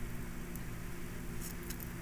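Steady low hum with a faint hiss, with no distinct event in it: background room tone.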